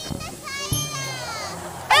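A child's high-pitched voice calling out, ending in a loud shout of "Ate!" near the end.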